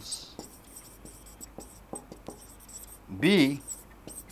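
Marker pen writing on a whiteboard: a run of faint, short strokes and ticks as words are written out.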